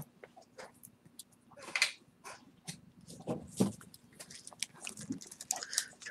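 A puppy chewing and playing with a bone: scattered small clicks and scuffles with a few short noisy bursts, the strongest about two seconds in.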